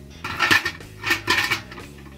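Parts of a brass Batashev samovar, its lid and top section, being lifted and handled, clinking and rattling against each other with a ringing metallic sound. The clatter comes in two clusters, about half a second in and again around one to one and a half seconds.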